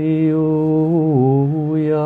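A man chanting a blessing on long sustained vowels: one held note that drops in pitch about a second in and steps back up half a second later.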